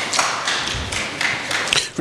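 Audience applauding, an irregular patter of many claps that stops just before the next speaker begins.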